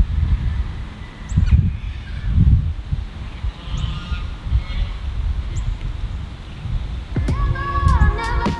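Wind buffeting the microphone in gusts, with a few short, high bird chirps; music comes in about seven seconds in.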